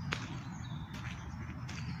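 Footsteps on a gravel footpath, a sharp stroke roughly every half second, over a low steady rumble.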